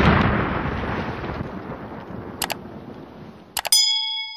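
Sound effects of an animated subscribe button: a sudden loud noise that fades away over about three seconds, a couple of short clicks, then a bright ringing ding near the end.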